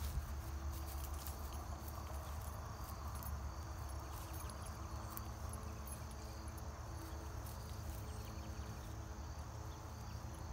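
Quiet outdoor ambience: insects calling in steady, thin high tones over a low rumble.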